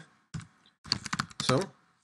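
Typing on a computer keyboard: a single key click, another about half a second later, then a quick run of keystrokes about a second in.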